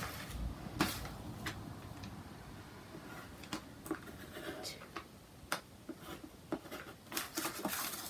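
Quiet handling sounds: a pencil writing on a sheet of paper and the paper shifting, with a few scattered light clicks and taps.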